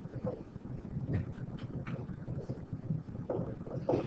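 Quiet room noise with a low hum and a few soft ticks and scratches from a stylus writing on a tablet screen.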